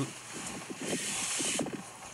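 Phone speaker playing back the sound of a safari video: faint voices and a short hiss about a second in, with no clear crunching.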